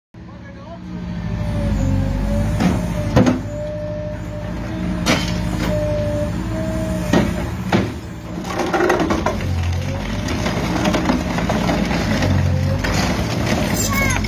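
Trevi Benne MK 20 multiprocessor jaws on an excavator crushing concrete, with about five sharp cracks of breaking concrete in the first eight seconds. Under them the excavator's engine runs steadily with a wavering whine.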